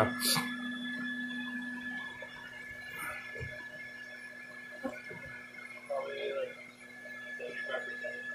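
Live-removal bee vacuum running with a steady hum and a thin whine, turned down a little so it runs quieter from about two seconds in.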